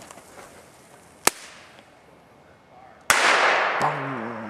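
Small fireworks going off: a single sharp crack a little over a second in, then a much louder blast about three seconds in whose crackling noise trails off.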